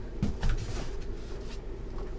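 Light handling noises from items being moved about in a cardboard box: a couple of soft knocks in the first half second, then faint ticks and rustles over a low room hum.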